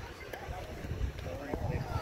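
Men shouting and calling out across an outdoor softball field during a play, several voices overlapping, over a low rumble.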